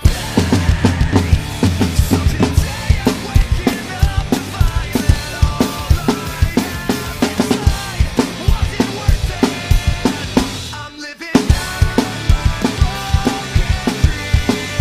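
Drum kit played over the song's recording: steady kick and snare hits with cymbals, coming in suddenly at the start. There is a brief break about eleven seconds in, then the beat resumes.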